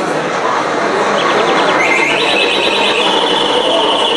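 A high, rapidly pulsing electronic ringing tone starts about a second in and grows louder near the middle, over the murmur of many people talking.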